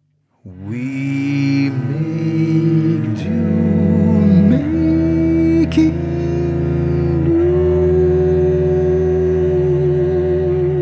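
Cello and a wordless voice humming long, slow notes with vibrato over a low sustained note. The music enters about half a second in, after a moment of silence.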